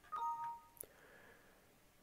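Windows system notification chime: a short two-tone ding as the Internet Explorer download finishes, followed by a single mouse click.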